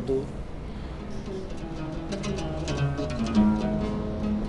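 Oud played solo: a few slow, separate plucked notes and short phrases, each ringing briefly.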